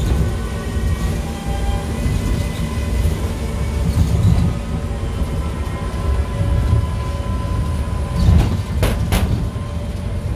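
Lotte World monorail car running, a steady low rumble heard from inside the cabin. Near the end there are two sharp clicks a fraction of a second apart.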